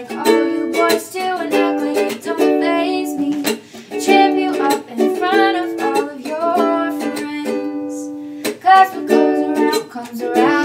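A ukulele strummed in a steady rhythm under a girl's singing voice. The strumming stops about seven seconds in while a note is held, then starts again a second and a half later.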